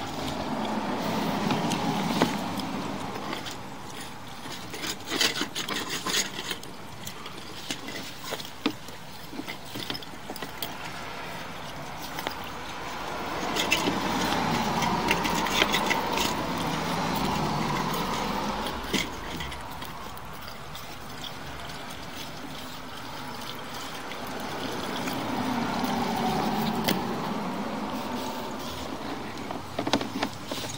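Vehicles passing on the street, two of them clearly, each swelling and fading over about five seconds. Scattered light clicks and knocks run throughout.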